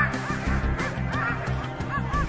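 A pack of harnessed sled dogs yelping and crying together: many short, high, rise-and-fall cries overlapping, several a second.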